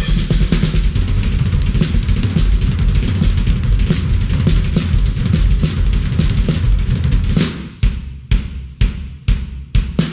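Drum solo on an acoustic drum kit: a dense, fast run of bass drum, snare and tom hits, which about two and a half seconds before the end opens up into single hard strikes, about two a second, with short gaps between them.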